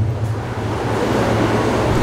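A steady rushing noise over a low hum, growing slightly louder across the pause.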